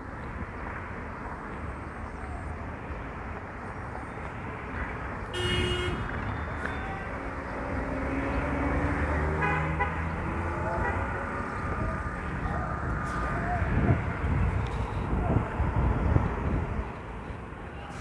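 Outdoor street ambience: steady traffic noise, with a short high-pitched horn toot about five seconds in and faint voices in the background.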